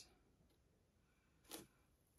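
Near silence: room tone, with one faint, brief soft click about one and a half seconds in.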